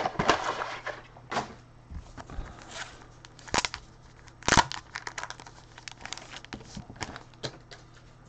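Handling noise from gloved hands working with trading cards and their packaging on a table: a string of sharp clicks and taps, loudest in the first half, then smaller, quicker ticks and light crinkling.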